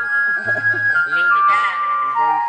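Electronic keyboard playing a melody of long held high notes over a stepping bass line, with voices talking underneath.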